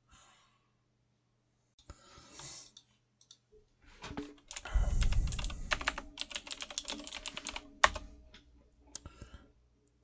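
Typing on a computer keyboard: a quick run of key clicks starting about four seconds in, ending with one harder key press near eight seconds and a few light taps after it.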